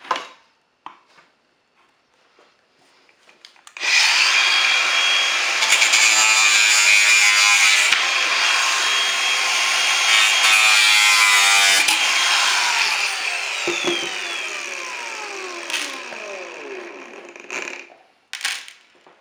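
Angle grinder with a thin cutting disc starting up about four seconds in and cutting at the corner of an aluminum composite panel, running with a steady high whine. About two-thirds of the way through it is switched off and spins down, its whine falling in pitch and fading until it stops near the end.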